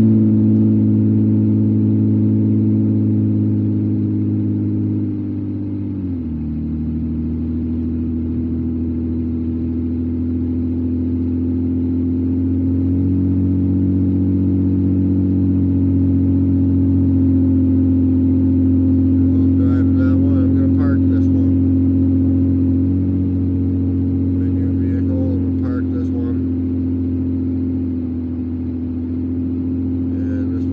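Car engine and road noise heard from inside the cabin while driving: a steady low engine hum whose pitch drops sharply about six seconds in, then climbs slowly and eases off again near the end.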